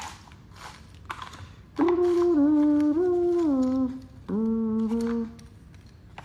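A man humming a short tune: a held note that steps up and then slides down over about two seconds, then, after a brief pause, one more held note. A few soft clicks come before the humming.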